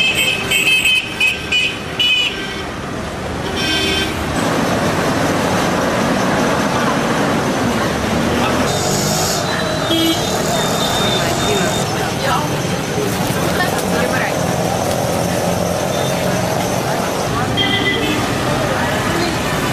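Busy street traffic with motor vehicles running past and a steady din of voices. Several short horn toots sound in the first two seconds and again around four seconds in.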